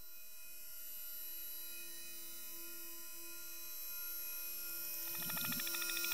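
Electroacoustic music: a cluster of sustained high electronic tones. About five seconds in, a fast, evenly pulsing texture enters and the sound grows slowly louder.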